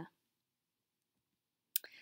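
The last syllable of speech, then dead silence for about a second and a half, broken near the end by a single sharp click just before speech resumes.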